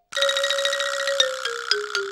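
Twinkling, chime-like editing sound effect: a held, shimmering chord with a glittering patter of high tinkles, under which a lower tone steps down in pitch about four times in the second half.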